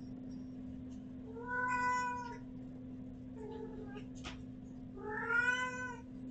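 A domestic cat meowing twice, two drawn-out meows about three seconds apart, each rising and then falling in pitch.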